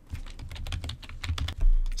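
Typing on a computer keyboard: a quick run of keystrokes entering a web address, with a heavier low thump near the end.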